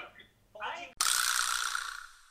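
A brief murmur of voice, then about a second in a sudden editing sound effect with a metallic ring starts and fades away over about a second and a half, cutting to dead silence.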